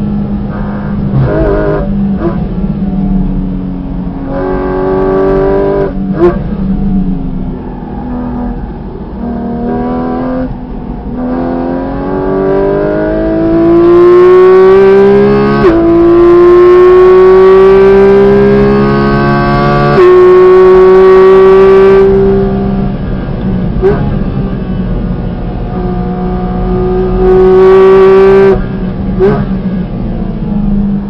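Porsche 718 Cayman GT4 RS's naturally aspirated 4.0-litre flat-six heard from inside the cabin, revving up hard with its pitch climbing and dropping suddenly at quick gear changes around the middle, easing off, then pulling hard again near the end. A few short sharp cracks stand out over the engine.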